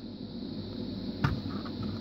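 Steady low hiss of room tone, with one soft click a little past a second in.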